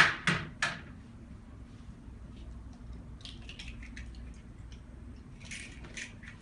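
Three sharp knocks in quick succession, from kitchen items handled on a tabletop, followed by faint clicks and rustling.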